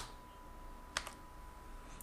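Computer keyboard keystrokes as a formula is typed into a spreadsheet cell: two sharp clicks about a second apart.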